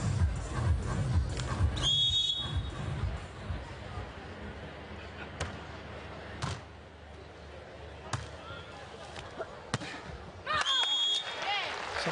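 Beach volleyball rally: venue music with a beat fades as a referee's whistle blows about two seconds in. Then come four sharp volleyball hits spread over the next eight seconds: serve, pass, set and attack. A second whistle and raised voices follow near the end as the rally finishes.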